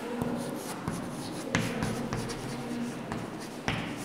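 Chalk writing on a chalkboard: scratching strokes with a few sharp taps as the chalk strikes the board, one about one and a half seconds in and one near the end.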